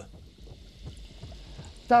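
Faint, irregular lapping of water in a glass tank. A man's voice starts right at the end.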